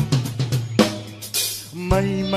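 Recorded Filipino rock song: drum kit hits with snare and cymbals, thinning out in the middle. Just before the end, a bass-drum hit opens a new passage with sustained bass and guitar tones.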